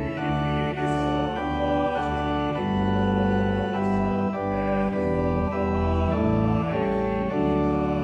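Church organ playing a slow hymn tune in held chords that change every half second or so, over a deep bass line.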